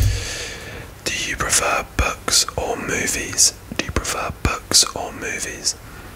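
A man whispering, with sharp hissing s sounds through his phrases.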